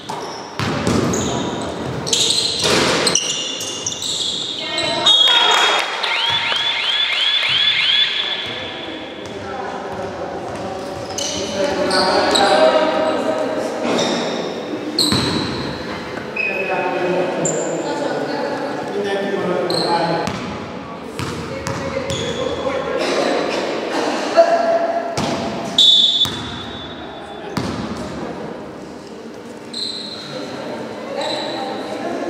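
Basketball being dribbled and bouncing on a wooden gym floor, with repeated sharp thuds and high squeaks of sneakers on the boards, echoing in a large hall.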